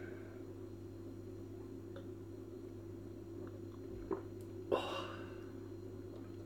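A man sipping beer from a glass: faint small clicks and swallowing sounds over a steady low hum, with a short breath out a little before the end.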